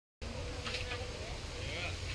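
After a brief silence at the very start, a flying insect buzzes faintly close by, its pitch wavering up and down over low outdoor background noise.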